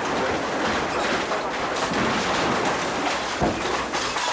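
A CAT excavator demolishing a house: a continuous crackle and crunch of breaking masonry and buckling metal roof sheeting, with a short thud about three and a half seconds in.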